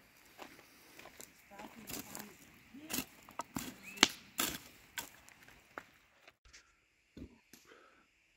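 Wood campfire crackling with scattered sharp pops and clicks as the embers are stirred with a stick, the loudest pop about four seconds in. Faint low voices underneath.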